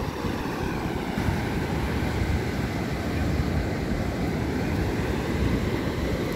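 Ocean surf breaking and washing on a sandy beach, a steady wash of noise, with wind rumbling on the microphone.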